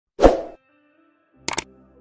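Subscribe-button animation sound effects: a short pop about a quarter second in, then two quick mouse clicks about a second and a half in.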